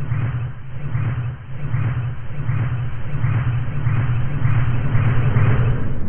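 A muffled, steady, rumbling sound-effect drone with a strong low hum, swelling rhythmically a little more than once a second.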